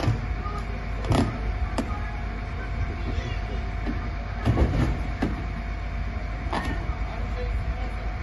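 Firefighters pulling apart burnt debris of a collapsed house: several irregular knocks and cracks of wood and rubble, the loudest about a second in and about four and a half seconds in. Under them runs a steady low rumble with a faint constant hum.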